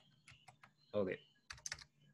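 Typing on a computer keyboard: a few light key taps, then a quick burst of several keystrokes near the end.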